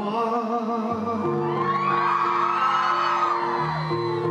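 Live Mandopop ballad: a male voice sings with vibrato over a steady backing track, then a crowd of fans screams over the music for about two seconds in the middle.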